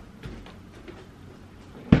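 Faint knocks and rustling as a printer is carried in, then a single loud thump near the end as it is set down on a desk.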